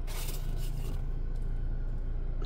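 Steady low hum of a 2014 Chevrolet Cruze's 1.4-litre Ecotec engine idling, heard from inside the cabin, with a light paper rustle right at the start.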